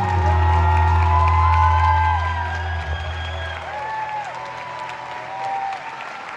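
A live band's final low chord rings on and fades out about four seconds in, while a concert audience cheers and applauds with shouts and whoops.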